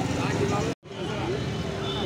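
Background chatter and general noise of an open-air vegetable market, with faint voices but no clear words. The sound cuts out completely for a split second just under a second in, then the same noise resumes.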